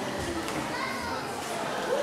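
Indistinct chatter of an audience, children's voices among it, at a low level.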